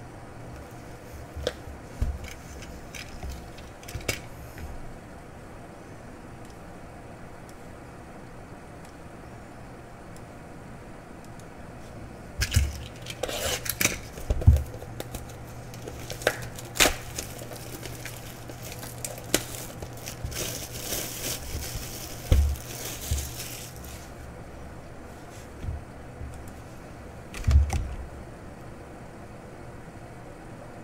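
Cellophane shrink wrap crinkling and tearing as it is pulled off a trading-card hobby box, with scattered knocks and clicks of the box being handled on a table, mostly in the second half. A low steady hum runs underneath.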